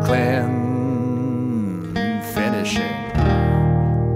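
Acoustic guitar music: a held chord with a melody line above it that wavers in pitch and slides down near the middle, with a fresh louder attack a little after three seconds.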